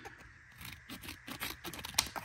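Trauma shears cutting through a thick sheet of material: a quick run of small crisp snips and crunches, with a sharper snap near the end.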